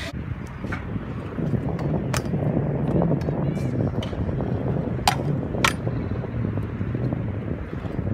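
Stunt scooter wheels rolling over concrete with a steady rumble, broken by a few sharp clacks as the scooter hits obstacles and lands, two of them close together about five seconds in.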